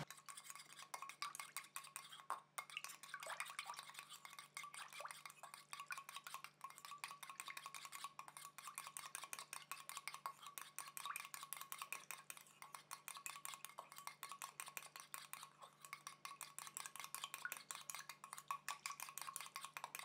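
Small wire whisk stirring a liquid in a stainless steel bowl: faint, rapid light clicking of the wires against the metal.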